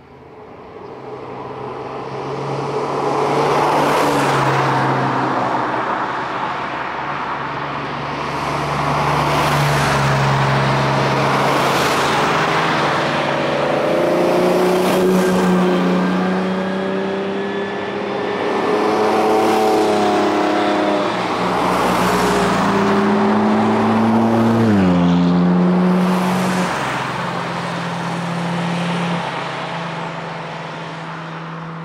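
A string of cars driving past one after another, each engine note swelling and fading as it goes by, with a steady engine note underneath. One engine's pitch drops sharply about 25 seconds in.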